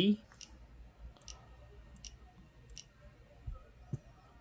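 Four short, sharp clicks about three-quarters of a second apart as the Z-axis jog buttons on a BigTreeTech TFT24 touchscreen are tapped.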